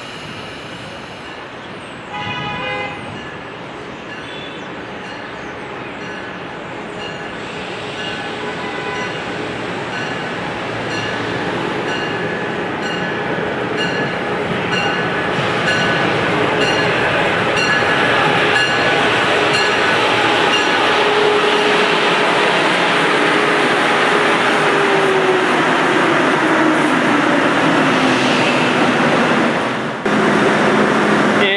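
Amtrak HHP-8 electric locomotive arriving along the platform: a short horn blast about two seconds in, then its bell ringing steadily while the rumble of the train grows louder as it comes alongside. Near the end a falling whine is heard as it slows.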